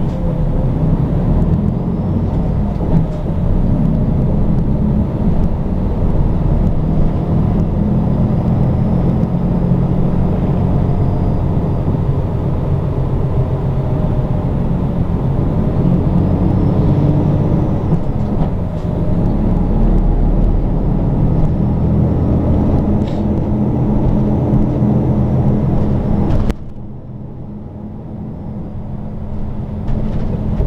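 Interior sound of a Nishitetsu city bus underway: the diesel engine and road noise drone steadily, the engine pitch rising and falling with speed. About 26 seconds in the sound drops abruptly to a quieter, duller hum.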